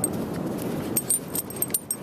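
A small dog's collar tags jingling in a run of light metallic clinks as it noses at its food bowl and the sand, over a steady background rush.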